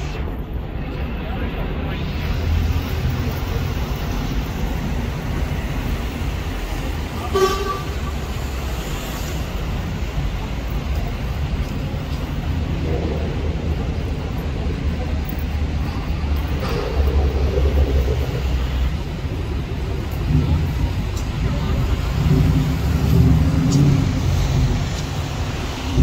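Dodge Challenger SRT Hellcat's supercharged V8 rumbling at low speed in city traffic among buses, louder in stretches near the middle and end. A short car-horn toot comes about seven seconds in.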